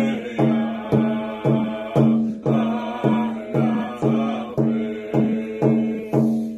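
A man singing a chant while beating a rawhide hand drum with a beater at a steady pace of about two beats a second.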